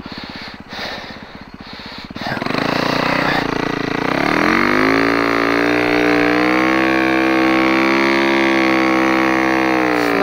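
Snowbike's engine running at low revs, then about two seconds in the throttle opens and it revs up, settling at a steady high pitch under load as the bike pushes up through deep powder.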